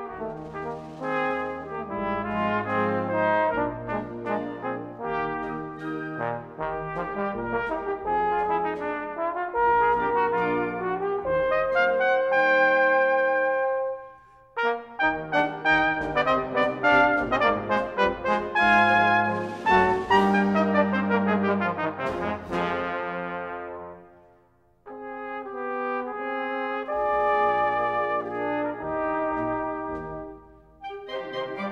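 Cornet and trombone duet with band accompaniment, playing quick runs of notes. A long held note breaks off about fourteen seconds in, and the music drops to a brief pause about twenty-four seconds in before picking up again.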